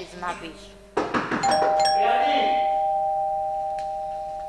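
Two-tone doorbell chime: a higher note, then a lower one just after, both ringing on and slowly fading.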